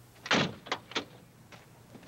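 A car door being opened: one loud clunk of the latch, then two sharper clicks close after it.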